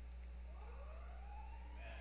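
A faint siren wail rising steadily in pitch, over a steady electrical hum.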